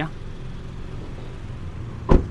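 Car engine idling: a steady low hum.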